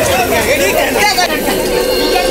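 Several people's voices overlapping at once in a busy, continuous chatter.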